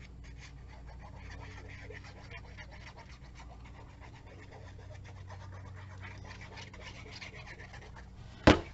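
Faint handling sounds of a paper hexagon and a fine-tip glue bottle, small scratches and ticks, over a steady low hum.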